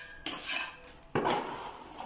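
A small steel trowel scraping cement mortar into a chase cut in a wall, in two strokes; the second starts sharply about a second in and is the louder.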